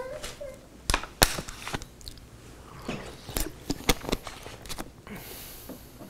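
Bible pages being turned: a scatter of short, sharp crackles and rustles of thin paper.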